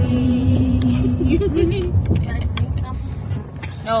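Van cabin engine and road rumble under people's voices: a held sung note that breaks off about a second in, a wavering voice, and a few sharp taps.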